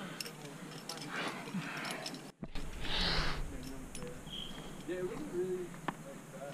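Faint, indistinct voices and breathing on a climbing route, with a few light clicks of climbing gear. The sound drops out abruptly for a moment about two seconds in and is followed by a short, loud rush of breath or air.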